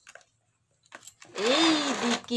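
Alexandrine parakeet giving a loud, harsh, raspy call that starts about a second in and slides up and down in pitch.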